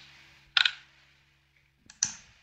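Computer mouse button clicking twice, once about half a second in and once near the end, with near silence between.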